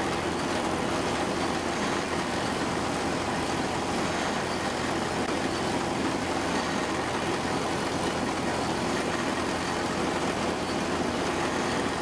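Tractor engine idling steadily, with no change in speed.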